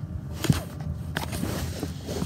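Phone handling noise: a sharp knock against the microphone about half a second in, a second click a little past a second, and rubbing and scraping in between.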